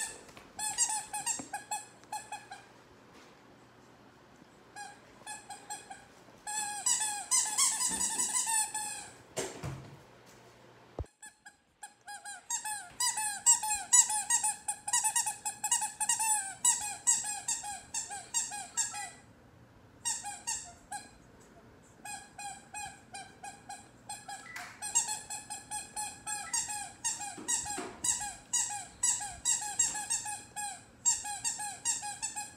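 Squeaky dog toy squeaked over and over, several squeaks a second, in runs of a few seconds with short pauses between them. A soft thump comes about ten seconds in.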